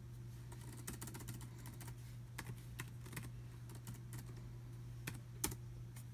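Keystrokes on a laptop keyboard: scattered light clicks, a quick group about a second in and the sharpest click near the end, over a steady low hum.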